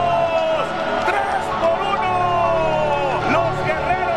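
A voice holding long notes that slowly fall in pitch, twice, over a steady background din.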